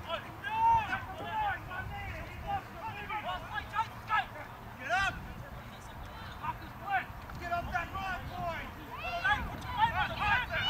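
Distant players and spectators shouting short, unintelligible calls across a rugby league field, one after another, a few louder than the rest.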